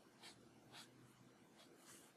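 Faint strokes of a Copic alcohol marker's tip on paper: about four soft, short scratches during shading.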